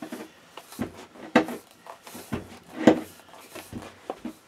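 Handling sounds from tying kite string around a rolled T-shirt on a tabletop: a series of short knocks and rustles, the two loudest about a second and a half apart.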